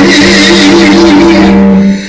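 A woman singing a gospel song into a microphone over a long, steady held accompanying note, very loud. The sound drops out briefly near the end.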